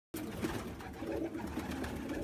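A flock of domestic pigeons cooing, several low, wavering coos overlapping.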